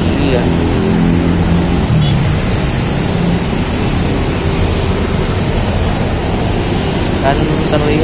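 Diesel coach engines idling close by, a steady low rumble, with a voice starting near the end.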